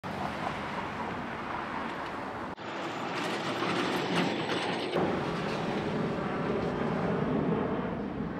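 City street traffic: vehicles passing, a steady noisy rumble. The sound breaks off and changes about two and a half seconds in and again around five seconds.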